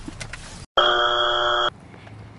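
A loud, steady electronic buzzer tone, the game-show 'wrong answer' kind, lasting about a second; it starts right after a brief gap in the sound and cuts off abruptly. It marks a 'no': this apartment doesn't offer short-term leases.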